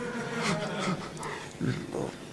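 Laughter: a man chuckling at the microphone in a few short bursts.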